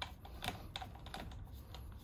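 Several light, irregular clicks and taps as a supporting side handle is turned and fitted onto the head of a battery-powered hydraulic cable cutter.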